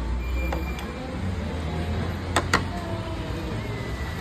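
Two quick, sharp knocks close together about halfway through, a hard object striking the clay pot of a pottery (testi) kebab, over a steady low rumble of room noise.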